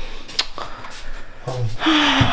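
A single sharp click, then a woman says a short, low "oh" and breathes out heavily in a sigh.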